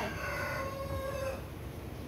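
A rooster crowing in one long, drawn-out call that fades out about one and a half seconds in.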